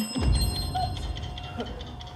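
Game-show sound effect: a short click, then a bright ringing chime of several high tones over a low rumble, fading out after about a second and a half. It marks the correct answer just given.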